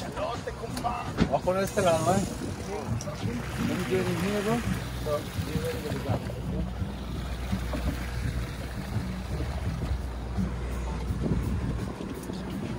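Boat engine running with a steady low drone, with indistinct voices calling out over it during the first half.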